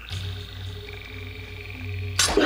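Night ambience from a TV episode's soundtrack: high pulsing, frog-like trills that start and stop over a low steady hum.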